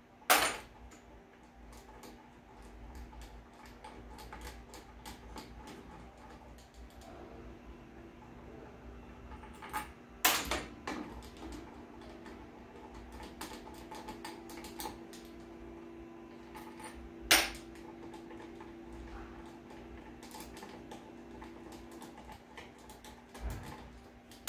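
Small metal hand tools clicking and tapping on an aluminium automatic-transmission valve body and a steel workbench, with three louder sharp clacks: near the start, about ten seconds in and about seventeen seconds in. A faint steady hum runs underneath.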